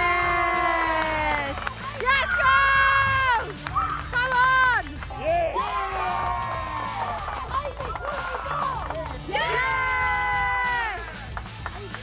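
Team bench of footballers and staff cheering a goal: several long, high-pitched shouts that slide down in pitch, with clapping, over background music.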